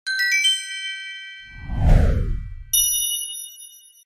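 Chime logo sting: a quick run of bright bell-like notes, a whoosh swelling up about halfway through, then a final ringing chime chord that fades away.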